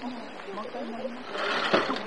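People talking, then a brief rattling clatter with one sharp knock near the end.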